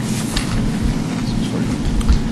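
A steady low hum with a constant hiss of background noise and a few faint ticks.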